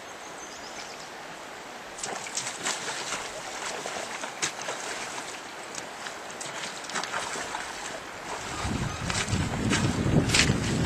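Steady rush of the river current, with irregular sharp ticks from about two seconds in and a low rumble building near the end.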